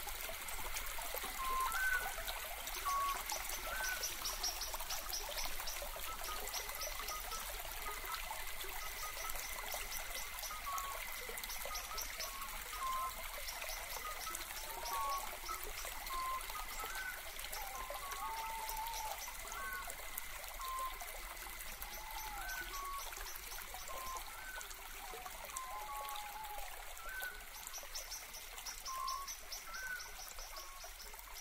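Steady trickle of running water, with small birds chirping now and then.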